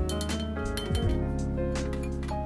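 Background music, with a few light metallic clinks of a steel perforated ladle knocking against the frying pan as fried boondi is scooped out of the ghee.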